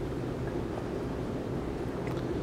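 Steady low rumble and hum of an airport moving walkway running under the camera, even in level throughout.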